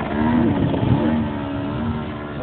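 Engine of a 2.5 m radio-controlled Extra 330S model aerobatic plane running in flight, a steady drone whose pitch wavers slightly.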